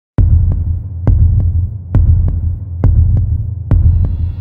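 Heartbeat sound effect: deep paired thumps, a strong beat followed by a softer one, repeating about once every 0.9 seconds over a low hum.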